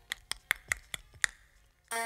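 A quiet run of sharp percussive taps, about five a second, in a break of a DJ mix. It stops for a moment, then keyboard-led music comes in right at the end.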